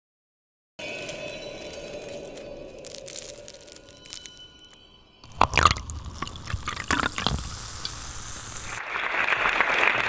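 Electronic title-sequence sting: held steady tones, then a run of sharp swooshing hits about halfway through, giving way to a steady rushing noise near the end.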